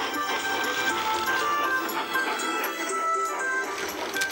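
Instrumental background music, a melody of short held notes at changing pitches.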